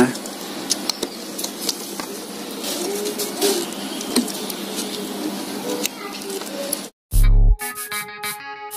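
Faint plastic clicks and handling noise as a Yamaha R15's fuse socket is pushed back into its holder, over steady background noise. About seven seconds in, the sound cuts out, a short loud low boom follows, and electronic keyboard music starts.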